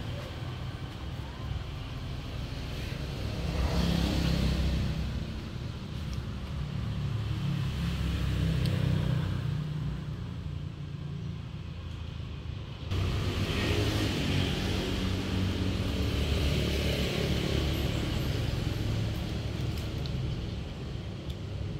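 Steady low outdoor rumble with a hiss above it, swelling and fading several times, with a sudden jump in level about two-thirds of the way through.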